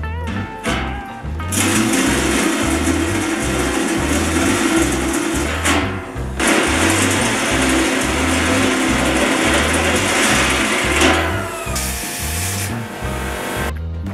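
A hole saw in a corded electric drill cutting through steel sheet, a steady grinding whine that starts about a second and a half in, stops briefly around six seconds between holes, and runs on until just before the end. Background music with a steady beat plays underneath.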